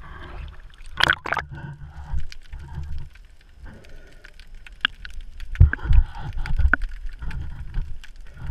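Splashing as an action camera is plunged under the sea surface about a second in, then the muffled underwater sound of water moving around the camera housing, with low thumps around the middle and scattered sharp clicks.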